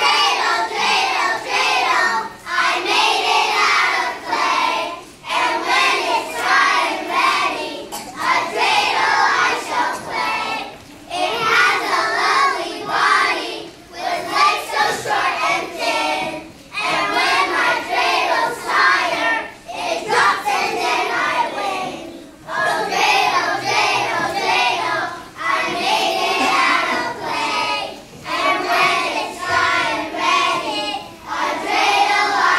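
A choir of young children singing together, in sung phrases of a few seconds each, with short breaths between them.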